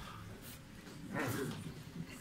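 A dog barking once, briefly, about a second in, over a low background hum.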